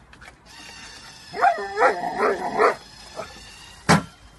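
A dog gives four short yips or barks in quick succession, then there is a single sharp knock near the end.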